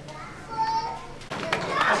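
People's voices: a short high-pitched voice about half a second in, then talking picks up again about 1.3 s in.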